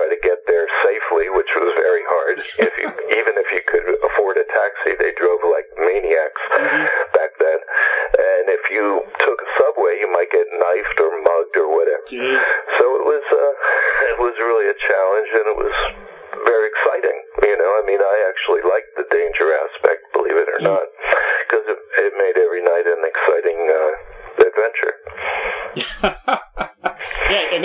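Speech only: a person talking without a break over a narrow, telephone-quality line.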